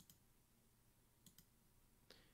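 Near silence broken by faint computer-mouse clicks: one right at the start and a quick pair about a second later.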